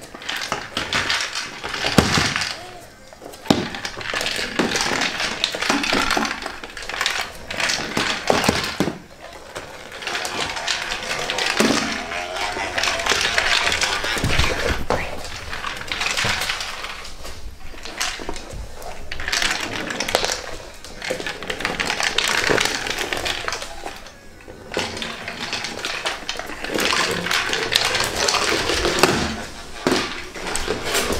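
A PetGeek Foodie Orb, a self-moving plastic treat-dispensing ball, rolling and clattering across a laminate floor as a dog noses and mouths it. The sound comes in uneven bursts of rattling, broken by sharp knocks.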